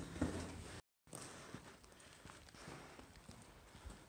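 Faint footsteps scuffing on a mine tunnel's rock floor as people walk out, scattered small clicks over a low background. The sound drops out completely for a moment about a second in.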